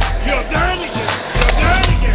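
Skateboard wheels rolling on concrete, then the clack of the board's tail popping an ollie-type trick over a traffic cone near the end, under a pop/R&B song with a singing voice.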